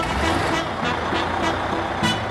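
Cartoon sound effect of a bus engine as the bus pulls away, a steady noisy running sound over background music.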